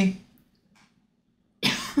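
A word trails off, a pause follows, and then a person gives one short, sharp cough near the end.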